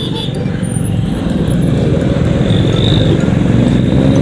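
Motorcycle riding in city traffic: the engine runs under way amid road noise and grows gradually louder.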